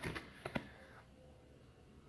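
Thin cardboard coin folder and certificate card being handled: a few short rustles and clicks in the first half second or so as the card is drawn out of the folder.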